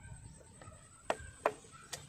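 Large kitchen knife shaving the skin off a fresh bamboo tube. Three short, sharp scrapes: two about a second in and one near the end.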